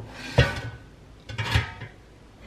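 Two sharp knocks about a second apart, each with a brief clatter: kitchenware being set down on a countertop.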